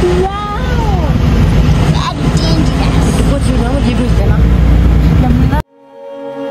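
Low rumble of a moving vehicle heard from inside the cabin, with voices over it; the sound cuts off abruptly just before the end.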